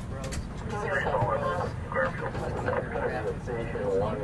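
Two-way radio chatter in police-style dispatch codes: thin voices broken by short pauses, over a steady low rumble like a running vehicle.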